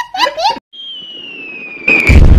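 A toddler laughing hard for about half a second. Then a cartoon falling-bomb whistle glides slowly down in pitch for about a second, and an explosion sound effect cuts it off near the end.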